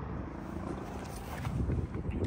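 Low, steady outdoor background rumble with no distinct event.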